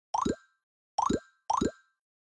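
Cartoon pop sound effect played three times, the same short upward-gliding 'bloop' each time, the last two close together.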